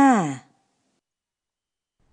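The end of a single spoken word whose pitch holds and then falls, stopping about half a second in, followed by near silence.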